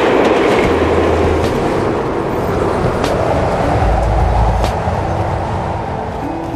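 Train passing at speed along the tracks: a steady rushing rumble of wheels and carriages, loudest at the start and slowly easing off.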